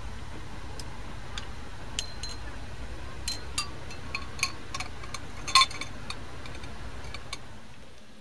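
Glass test tubes clinking against each other and the rim of a glass beaker as they are set into a hot-water bath: scattered light ticks and clinks, the loudest about five and a half seconds in, over a steady low hum.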